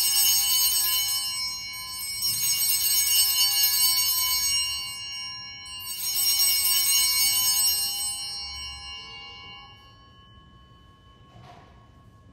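Altar bells (Sanctus bells) rung three times, each ring a bright, shimmering jangle that dies away slowly, fading out about ten seconds in. They signal the elevation of the chalice at the consecration.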